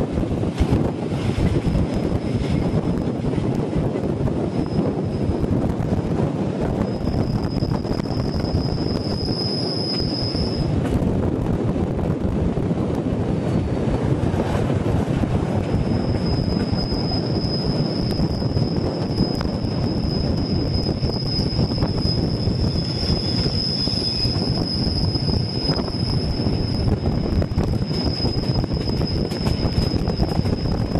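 Rhaetian Railway Bernina line train running on a tight curve, its metre-gauge carriages rumbling steadily on the track. A high, steady wheel-flange squeal sounds briefly about a third of the way in and again through the second half. Heard from an open carriage window.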